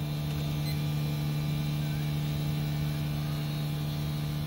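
LG mini-split heat pump outdoor unit running while heating the water tank: a steady low hum with a few fainter, higher steady tones over an even background whoosh.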